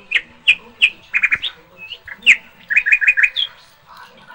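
A small bird chirping: about a dozen short, high chirps, some in quick runs of three to five.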